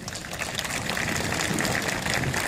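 Crowd applauding: a dense patter of many hands clapping that builds over the first second and then holds steady.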